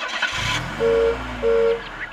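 Cartoon car sound effect: an engine revving up and back down, with two short horn honks about a second in, half a second apart.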